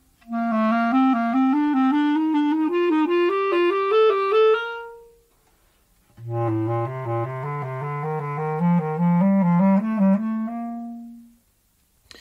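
A basset horn plays a rising scale of about an octave. After a short pause a bass clarinet plays a similar rising scale an octave lower, with a deeper, rounder sound.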